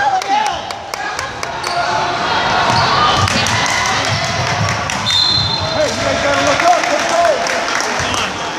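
Basketball game in a gym: a ball bouncing on the hardwood court amid shouting and cheering from spectators and players, echoing in the hall. A short referee's whistle sounds about five seconds in.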